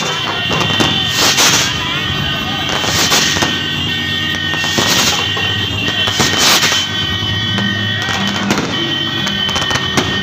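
Street procession din: a crowd with motorcycles and music, and loud sharp bangs about every second and a half.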